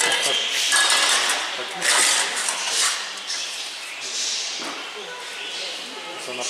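Indistinct voices of people talking, no words made out, with a hissy clatter of background noise. It is louder in the first half and softer after about three seconds.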